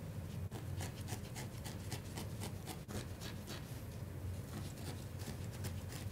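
Barbed felting needle stabbing repeatedly into a core-wool bird body, a quick run of faint soft ticks, about four a second, over a low steady hum.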